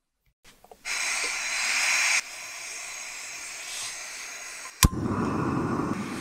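Gas hissing from a backpacking canister stove, loud at first and then dropping to a quieter steady hiss. A sharp click of the igniter comes about five seconds in, and the lit burner then runs with a fuller, lower rushing sound.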